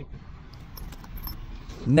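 Light rattling and faint clicks of a hard plastic battery bag being pushed and seated onto a folding bike's front carrier mount.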